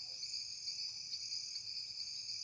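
Insects chirring in a steady, high-pitched chorus with no breaks.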